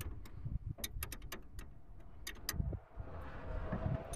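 Ratchet wrench clicking on a car battery terminal nut, in short, irregular runs of clicks, most of them in the first half and a couple more after two seconds.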